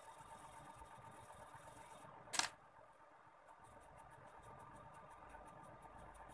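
Pencil scratching on drawing paper: a soft hiss of shading strokes, one sharp click about two and a half seconds in, then quick short strokes about five a second.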